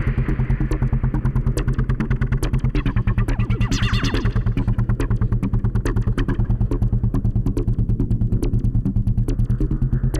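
Live electronic synthesizer music with a fast, even pulsing rhythm over a sustained deep bass. A brighter synth sound swells up around the middle, then fades back.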